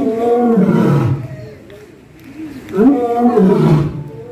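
Lion roaring twice, each call about a second long and sliding down in pitch, the second coming near the end.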